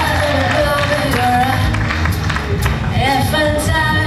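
Live band music with a woman singing lead into a stage microphone, her voice holding and bending long sung notes over the band, with drum and cymbal hits.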